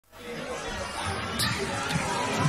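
Recorded intro of the pop song's backing track fading in: a muffled, chatter-like blur of voices and sound, with no drums yet.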